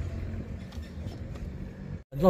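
A VW Touareg's engine idling, a steady low rumble heard from inside the cabin.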